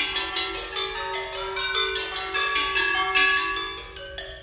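A percussion quartet playing struck metal percussion (small bells, bowls and gongs) with mallets and sticks: a quick, dense run of several strokes a second, each ringing on in bell-like pitched tones over a held lower ring.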